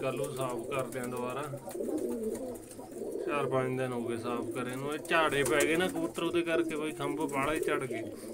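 Domestic pigeons cooing in a loft.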